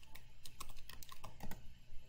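Typing on a computer keyboard: a string of light, quick keystrokes entering a tag name.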